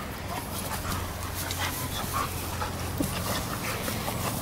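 An American Bulldog and a Lurcher play-fighting: panting and brief small dog vocalisations with short scuffling clicks, over a low steady hum.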